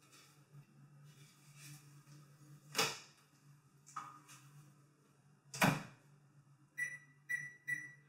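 Microwave oven being loaded and set: its door clicks, with a louder clunk a little past halfway as it is shut, then three short high beeps from the keypad near the end.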